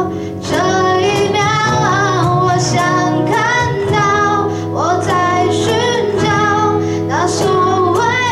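A woman singing a ballad live into a microphone, her voice sustained and wavering on held notes, backed by two strummed acoustic guitars, an electric bass and a cajón.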